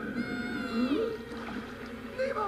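A gull's long, wavering cry that falls away at its end, about a second long, coming once in the first half.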